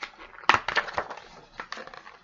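Page of a hardcover picture book being turned: a quick series of paper rustles and flicks, the loudest about half a second in.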